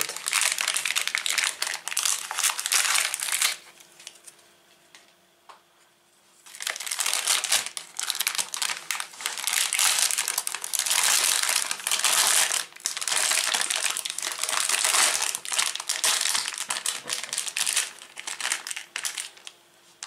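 Plastic outer wrapper and foil inner packet of a pack of puff pastry crinkling as they are opened and peeled back by hand. It comes in long stretches of crackling, with a pause of about three seconds near the start.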